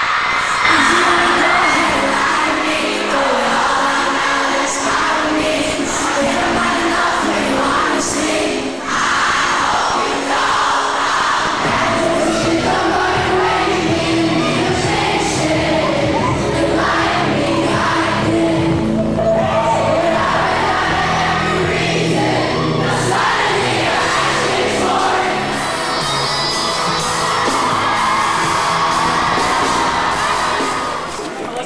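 A concert crowd screaming and cheering over loud pop music with singing. A heavier bass comes in about twelve seconds in.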